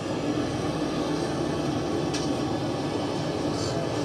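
Steady sizzle and rumble of jalebi frying in a wide pan of hot ghee at a street-food stall, an even noise that holds without a break.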